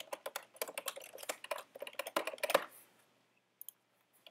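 Typing on a computer keyboard: a quick run of keystrokes for about three seconds, then a couple of faint clicks near the end.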